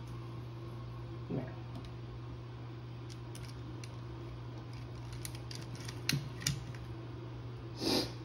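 Light handling sounds: a few soft knocks and rustles as a pillar candle is set down onto a candlestick inside a ring of artificial berries, over a steady low hum.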